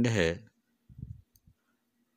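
A man's voice finishing a word about half a second in, followed by a pause broken only by a few faint, short, low knocks.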